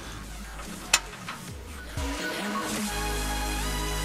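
A single sharp click about a second in, as a fitting snaps into place on the car's bumper mount. Electronic background music starts about halfway through and carries on.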